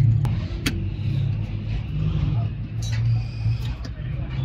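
A small car engine idling with a steady low rumble, with a few sharp clicks as the air-filter housing is fitted back onto the engine.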